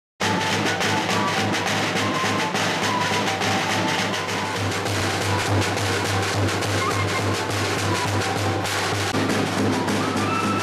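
A small flute-and-drum band playing: two side-blown flutes carry a melody over a steadily rolling snare drum and a bass drum.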